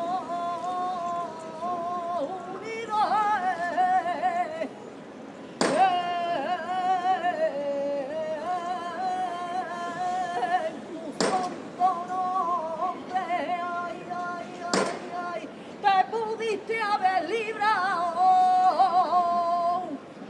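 A saeta: a single unaccompanied voice singing a flamenco devotional song to the float, in long, wavering, ornamented phrases with short breaks between them. Three sharp clicks cut in between the phrases.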